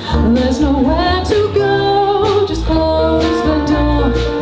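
Live jazz band with a funk feel: a woman singing, her voice sliding between notes, over electric bass, drum kit and keyboard, with steady drum strokes.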